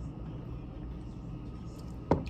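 Steady low background rumble of room noise, with no distinct sounds standing out.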